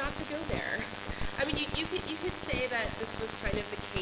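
A person talking, faint and hard to make out, with dense crackling clicks over the voice.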